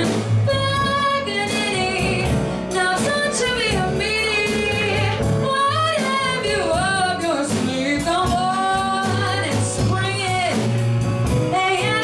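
Live jazz quartet: a female vocalist scat-singing wordless, winding lines over stage piano, upright double bass and drums.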